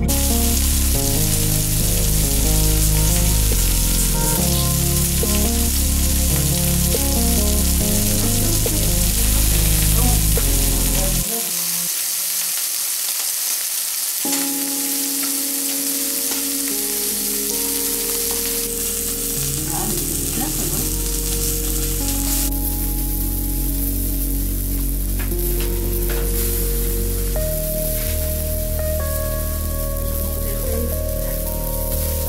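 Meat and sausages sizzling on the hot griddle plate of an electric raclette grill, a steady frying hiss, with music playing underneath whose deep bass drops out about a third of the way in.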